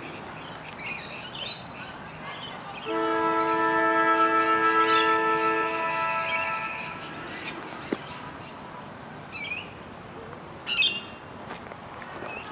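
A loud, steady horn sounding a chord of several notes starts about three seconds in and holds for about four seconds, its lower notes cutting off a moment before the upper ones. Birds chirp and squawk on and off throughout.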